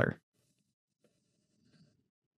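A man's voice trailing off at the very start, then near-silence room tone with a faint, soft scratchy rustle a little past halfway.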